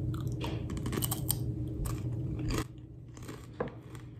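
Someone biting into and chewing a thin, crisp chip close to the microphone: a dense run of sharp crunches for about the first two and a half seconds, then quieter chewing.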